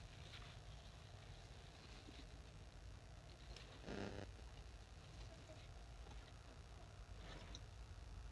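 Near silence: a faint low rumble, with one short, slightly louder sound about four seconds in.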